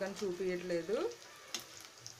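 Onions, green chillies and peanuts frying in oil in a steel kadai, a faint steady sizzle. Two light clicks come about one and a half seconds in.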